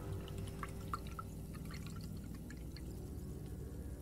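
A few small, drip-like ticks in the first two seconds, over a faint, low, steady rumble.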